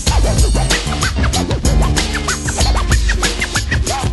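Late-1980s hip hop track: a drum beat and deep bass with turntable scratching laid over it, many quick rising-and-falling scratches.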